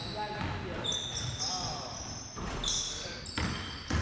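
A basketball is dribbled on a gym's hardwood floor, with sharp bounces and the loudest bounce near the end. Short high squeaks, typical of sneakers on the court, come about a second in and again near three seconds, and players' voices echo in the hall.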